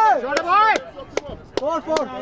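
Cricket players shouting short, drawn-out calls, with several sharp clicks between them.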